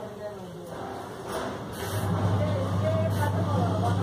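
Voices talking in the background. About halfway through, a steady low hum sets in, like an engine running, and becomes the loudest sound.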